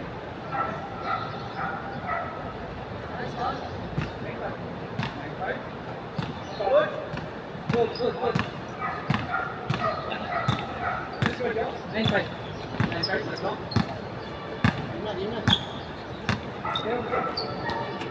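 A basketball bouncing repeatedly on a hard court, a series of short irregular thuds, with players' voices calling out in the background.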